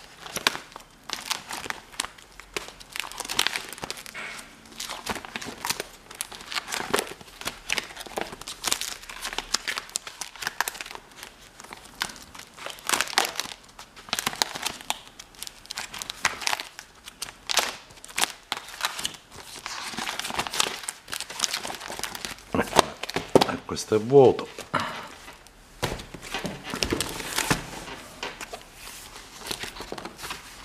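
Clear plastic pocket pages of a ring-binder album being handled and turned one after another, crinkling and rustling in irregular bursts.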